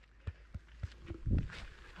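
Running footsteps on a paved path, about three footfalls a second, with a short spoken "oh boy" just over a second in.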